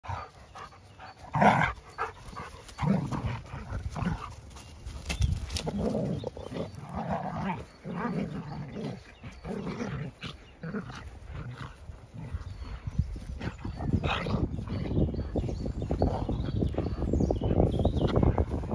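Two dogs, a German Shepherd and a black dog, play-fighting, with irregular growls and grunts in short bursts, the loudest about a second and a half in, over scuffling in the grass that grows denser near the end.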